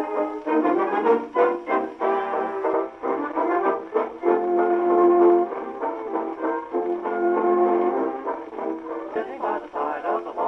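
Columbia 124A acoustic gramophone playing a 78 rpm shellac record of brass-led band music. The sound has no deep bass and no high top. Held brass chords come about halfway through and again near the end.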